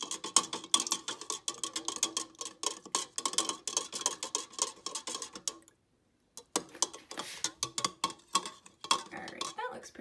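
Metal spoon stirring water in a plastic cup, clinking rapidly against the cup's sides. The clinking stops briefly about six seconds in, then there are a few more seconds of clinks.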